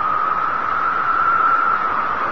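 Steady rushing noise, its hiss strongest in the middle range, swelling slightly and drifting gently upward in pitch.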